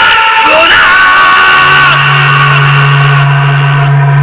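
A loud music sting from the show's title transition: long held tones that glide upward about half a second in, with a low steady drone joining about a second and a half in.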